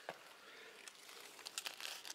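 Faint crinkling, rustling handling noise, with a cluster of quick scratchy rustles about one and a half seconds in.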